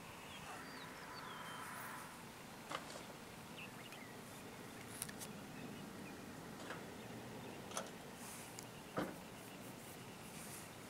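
Faint, steady outdoor background with a few short, high falling chirps near the start and several sharp clicks scattered through it.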